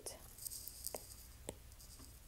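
Faint stylus taps and a brief rub on a tablet's glass screen: a soft scrape about half a second in, then two light clicks, one at about one second and one at about one and a half seconds.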